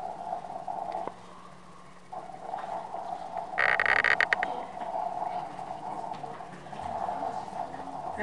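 A steady hum from the sound system, with a loud crackling burst of microphone handling noise about halfway through.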